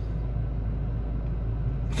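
Steady low rumble inside a stationary car's cabin.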